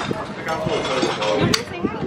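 Voices of people at a dining table, with a single sharp click about one and a half seconds in.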